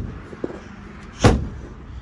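A car hood being shut: one loud metal thump about a second in, ringing briefly.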